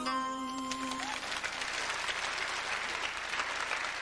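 A song's last held note dies away about a second in, and audience applause rises and carries on until the sound cuts off abruptly.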